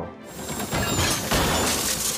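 Something breaking with a crash, heard as a dense noise with several sharp hits over about two seconds, over music.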